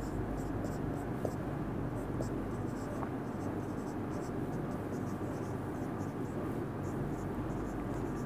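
A marker pen writing on a whiteboard: a run of short, scratchy strokes as a word is written out, over a steady low background hum.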